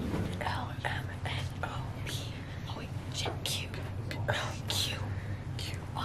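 Several people whispering in short hissed syllables, with no full voice, over a steady low hum.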